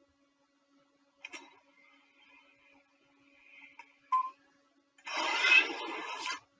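A faint hum with a click, then a short beep about four seconds in, followed near the end by a loud burst of hissing noise.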